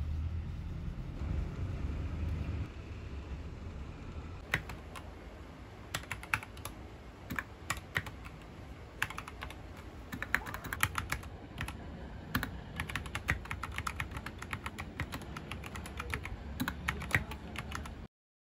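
Typing on a 60% mechanical keyboard with brown switches (an Anne Pro 2): quick runs of key clacks with short pauses, starting about four seconds in. Before the typing starts there is only a low rumble.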